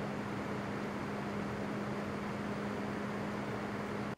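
Owl-themed 3D-printed PC cooling fan running at a steady speed: an even airy whoosh of moving air with a steady low hum underneath.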